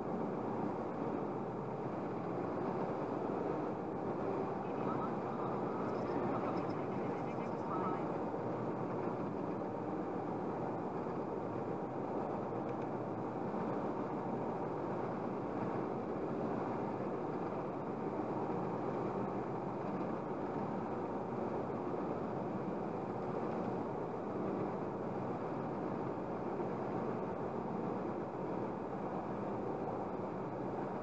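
Steady road and tyre noise of a car cruising at about 100 km/h, heard from inside the cabin, with no change in level throughout.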